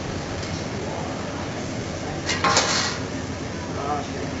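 Metal spatula clattering on a steel teppanyaki griddle: a brief, loud run of clinks about two and a half seconds in, over steady restaurant noise with voices in the background.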